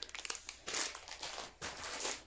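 Clear plastic packaging crinkling as it is handled, in a burst lasting about a second starting just over half a second in, and again at the end.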